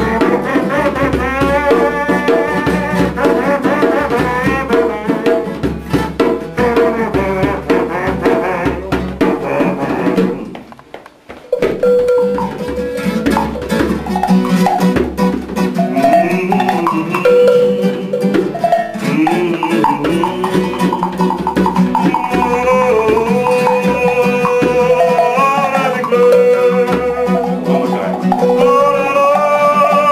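Live acoustic music: a classical guitar played together with hand percussion (cowbells, blocks and bar chimes). The music drops out for about a second around eleven seconds in, then carries on.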